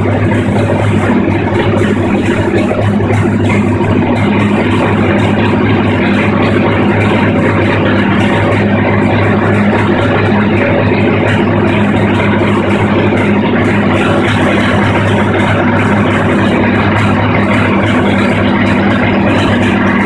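Freshly repaired carbureted Chrysler 360 small-block V8 idling steadily, with an even, unchanging engine note.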